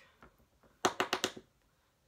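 A quick run of about five light clicks or taps, about a second in, as makeup tools are handled.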